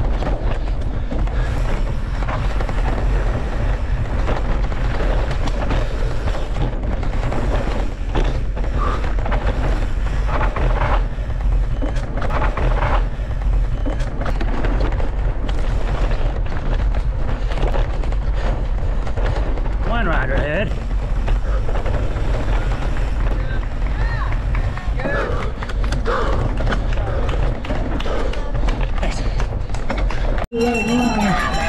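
Mountain bike descending rough singletrack at speed: a steady rush of wind buffeting the on-bike camera's microphone, with the bike's frame, chain and tyres rattling and knocking over the rough trail throughout.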